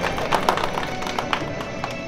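Background music with quick, sharp notes, no speech.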